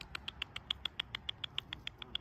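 Grey squirrel chattering: an even, rapid series of short high chirps, about seven a second.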